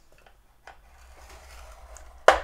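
Scoring stylus drawn down a groove of a Simply Scored scoring board, creasing cardstock along a score line. A light tick about two-thirds of a second in, then a faint scrape that grows slightly louder.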